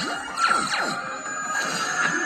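Cartoon soundtrack played through a tablet's speaker: sound effects that sweep down in pitch about half a second in, over background music.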